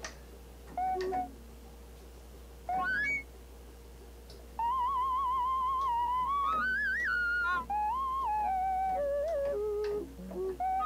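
Roland JX-3P analog synthesizer playing a whistle-like lead patch called Song Whistle. A couple of short notes and a quick upward slide come first, then from about halfway a long wavering melody climbs and steps back down.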